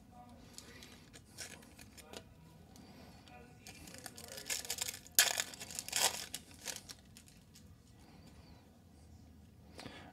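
Foil wrapper of a football trading-card pack torn open by hand: crinkling and tearing, loudest about five to six and a half seconds in, after a few faint clicks of cards being handled.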